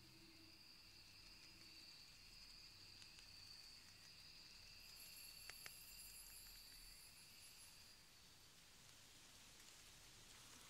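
Near silence: room tone with a faint steady high whine and two small clicks a little past the middle.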